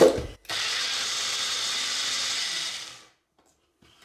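Small personal blender motor running briefly, whipping soaked cashews and water into a thick vegan cream, then switched off and spinning down after about two and a half seconds.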